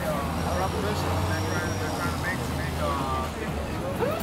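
Street traffic: a vehicle engine's steady low rumble, with several people talking in the background.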